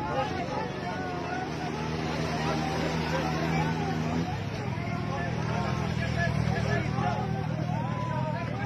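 A heavy truck's engine running as it passes close by, its steady hum changing about four seconds in, with people talking in the background.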